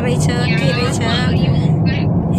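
Steady low road-and-engine rumble of a moving car, heard from inside the cabin, under a voice singing a song.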